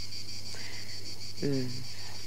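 Steady high-pitched chirring of insects in the background, over a low steady hum.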